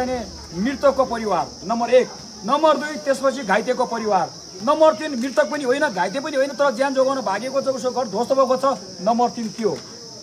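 A man speaking to a gathered crowd, over a steady high-pitched hiss that runs throughout.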